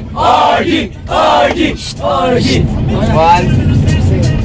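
A group of teenage boys shouting and cheering, about four loud shouts, inside a crowded vehicle cabin, with the low rumble of the vehicle's engine underneath that grows stronger in the second half.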